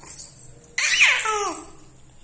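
A four-month-old baby gives one long, loud vocal call about a second in, starting high and sliding down in pitch.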